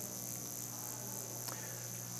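Faint room tone: a steady low hum with a thin, steady high-pitched whine above it.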